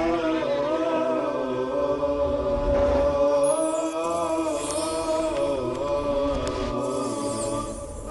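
Vocal chant as the opening theme of a TV programme, with sustained voices sliding slowly up and down in pitch. A falling whoosh effect sweeps through about three and a half seconds in.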